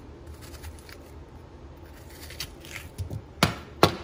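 Kitchen knife cutting into a watermelon on a countertop: soft scraping and cutting sounds, then two sharp knocks about half a second apart near the end.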